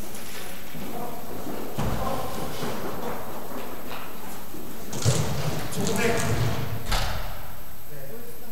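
Indistinct talking in the distance over a steady hiss, with a few thumps; the loudest thump comes about five seconds in.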